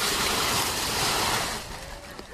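A steady rushing noise, spread evenly across the high range, lasting about a second and a half and then fading out.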